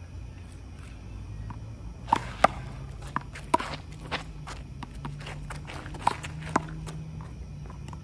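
Handball rally: a rubber handball slapped by gloved hands and smacking off the wall and concrete court in a string of sharp hits, the loudest about two seconds in, with sneakers scuffing on the concrete between them.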